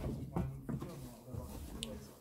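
Footsteps crunching and scuffing over a rubble-strewn concrete floor, irregular knocks and scrapes of debris underfoot, with a brief high squeak near the end.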